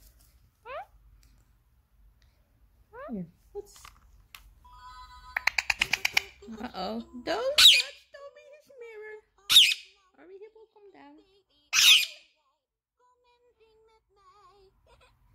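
Pet Alexandrine and Indian ringneck parakeets calling. There are a few short rising whistles, then a quick run of rapid chattering notes, then three loud, harsh, falling screams about two seconds apart.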